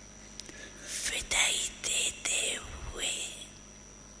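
Slow, soft speech in Hindi: a few words with hissy 's' sounds, then a pause, over a faint steady hum.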